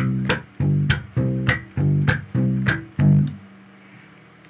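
Electric bass guitar playing a root-and-fifth line in short, clipped notes, about two a second. A sharp percussive slap-like click marks the end of each note. The line stops about three seconds in, and the last note rings a little longer.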